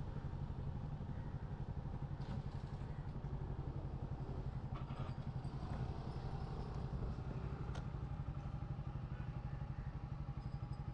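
Small motorcycle engine running steadily at low riding speed, with a fast, even pulse.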